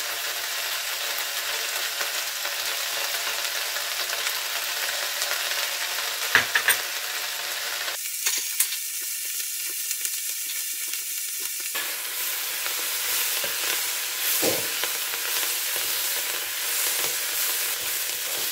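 Chopped onion-flower stalks sizzling steadily as they fry in a nonstick pot, stirred with a wooden spatula. A few light clicks come about six seconds in, and a single knock near the end.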